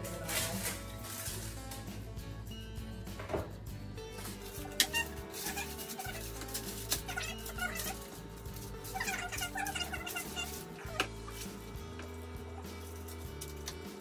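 Background music with a steady bass line and a long held note, with light clicks and taps from a spoon and baking tin as cake batter is spread.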